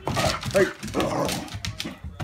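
A dog's excited vocal bursts, several in quick succession, as it plays rough.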